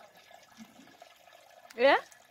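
Traditional sorghum beer trickling and dripping faintly from a hanging cloth straining sack into a metal pot. A woman's short rising "yeah" comes near the end.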